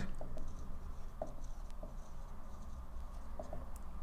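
Dry-erase marker writing on a whiteboard: a scatter of short, faint strokes and taps as words are written.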